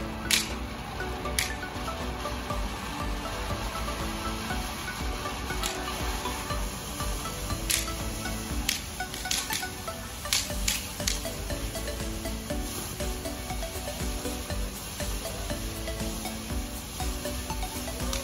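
Background music over the steady spraying hiss of a fountain firework (a fire pot) throwing sparks, with sharp cracks scattered through, a cluster of several near the middle.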